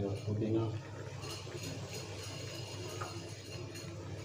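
Faint voices in the background over a low, steady hum; scattering the mint makes no distinct sound.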